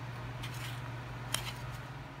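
Plastic parts of a battery-powered LED bulb being twisted and handled by hand, its base not screwing in properly: faint rubbing and light clicks, with one sharp click a little past the middle, over a steady low hum.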